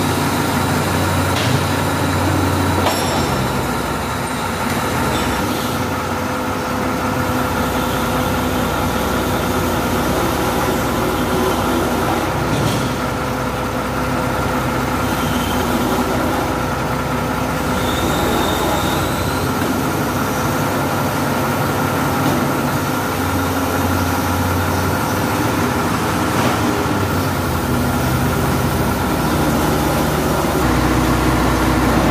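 A truck-mounted crane's engine and hydraulics running steadily while it hoists a load, with a constant whine over a low drone that shifts in level every few seconds.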